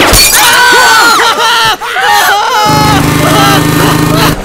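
A sharp crash, then several people shouting and yelling over one another in high, strained voices. Near the end, a steady low hum takes over.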